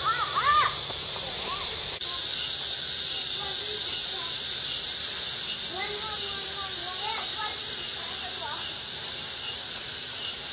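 Steady high-pitched buzzing chorus of summer cicadas, stepping up in loudness about two seconds in. A few short arching bird calls come right at the start.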